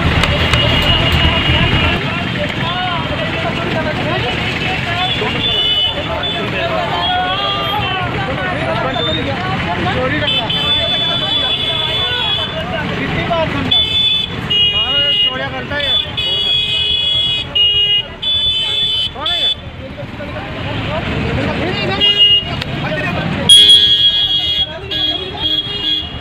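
Men's voices arguing in a busy street over traffic noise, with repeated high-pitched vehicle horn honks from about five seconds in.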